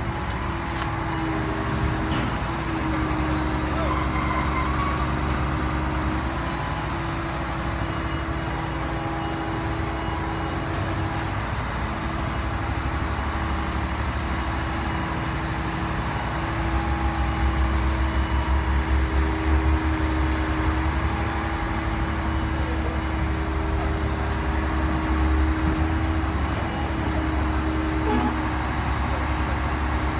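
Street and construction-site engine noise: a steady low engine hum with held tones that drift slightly in pitch, typical of idling diesel vehicles or site machinery. A heavier pulsing rumble swells a little past halfway and then settles back.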